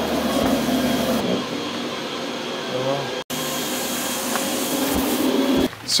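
Cutting plotter running as it cuts paint protection film: a steady mechanical whir from its carriage and feed motors, with a short sudden dropout a little past halfway.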